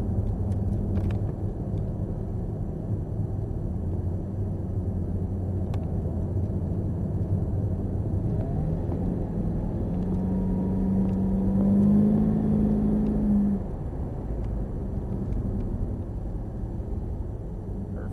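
Cadillac CTS-V's V8 engine heard from inside the cabin, running steadily at speed on track. About ten seconds in, the engine note swells louder and climbs in pitch for three or four seconds, then drops back suddenly.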